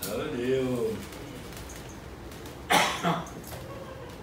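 A person's short voiced moan, then a sharp breathy outburst, the loudest sound, a little under three seconds in. These are reactions to being pressed on during acupressure.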